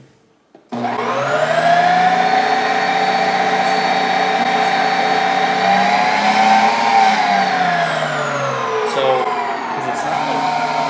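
Ninja Creami Breeze ice cream maker running its ice cream program: its electric motor starts suddenly about a second in with a loud whirring whine and runs steadily, its pitch wavering and then dropping near the end.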